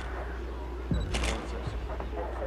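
A camera shutter firing once about a second in, a quick double click, with a short high beep just before it, as a forensic investigator photographs the scene.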